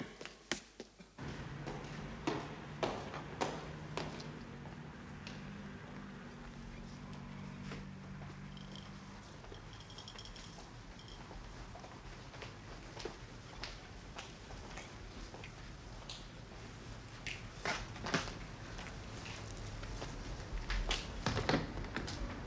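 Footsteps and scattered knocks on a railway platform, over a steady low hum for the first several seconds. A cluster of louder knocks comes near the end, as a suitcase is set down.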